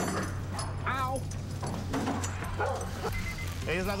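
A dog barking a few short times, over a steady low hum.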